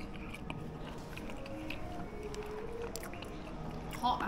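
A person chewing a mouthful of mussels close to the microphone, with small soft mouth clicks.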